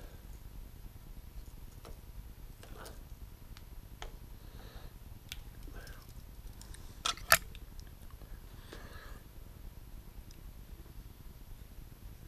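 Hands handling and splitting thin insulated wire: faint scattered clicks and rustles over a low steady hum, with two sharp clicks in quick succession about seven seconds in.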